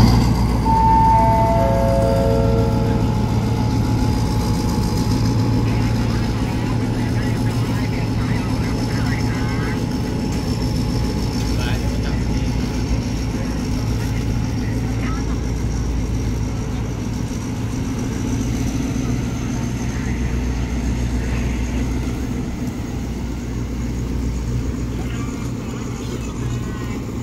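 A diesel-hauled passenger train pulls out of the station. A steady low locomotive engine rumble slowly fades as it leaves, with a faint high whine rising slowly in pitch. About a second in, a station PA chime plays four descending tones.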